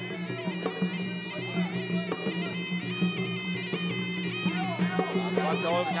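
Traditional Kun Khmer fight music: a shrill reed pipe (sralai) playing a wavering melody of held notes over a steady low hum and scattered drum hits.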